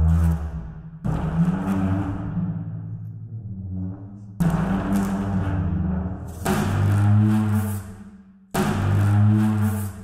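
Sampled large frame drum drag effects from the Soundpaint Epic Frame Drums library, played from a keyboard: low, pitched drags made by rubbing a superball across the drum skin. One is still sounding at the start, and new ones begin about a second in, at about four and a half, six and a half and eight and a half seconds, each swelling and fading.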